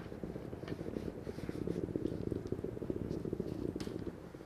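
Handheld garment steamer running: a rapid, low, purring buzz from its pump as it pushes out steam, with a short click near the end just before the buzz stops.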